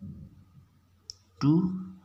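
A soft knock as a pen touches down on paper, then a short click about a second in, followed by a man saying 'two'.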